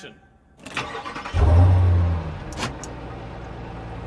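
A car engine starting and revving hard for about a second, then settling to a lower, steady run, in an intro skit. A sharp knock comes just before it starts, and brief clicks come after the rev.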